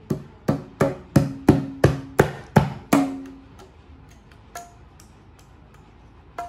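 A small child's hands slapping a pair of bongo drums: about nine strikes at roughly three a second, the heads ringing with a low tone, then a pause and one lighter strike.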